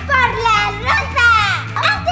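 Young girls talking excitedly in high voices, with steady background music underneath.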